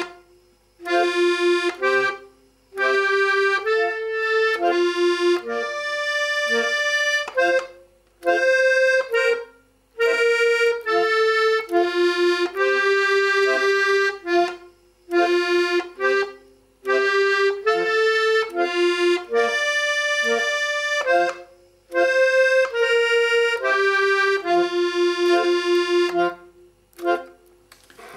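A piano accordion playing a simple melody in F major on the keyboard, with short bass-button notes under it, in phrases separated by brief pauses.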